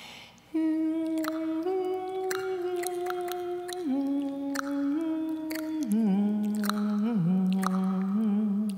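A woman's solo voice holding long, hum-like notes that step up and down in pitch, with sharp tongue clicks struck over them about once a second: one voice sounding two parts at once, an extended vocal technique. A quick breath comes in just before the notes begin, about half a second in.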